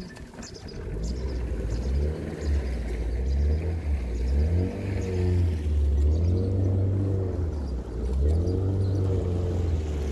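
Outboard motor of a small boat running and revving as the boat gets under way, growing louder over the first second, its pitch rising and falling several times.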